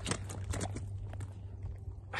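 Several soft, irregular thumps and knocks from a lively carp flapping on the bank as it is handled, over a steady low wind rumble on the microphone.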